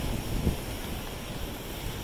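Wind buffeting the microphone: an uneven low rumble over a steady hiss, with a stronger gust about half a second in.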